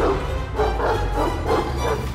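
A Dalmatian barking about four times in quick succession, over trailer music with a deep low rumble.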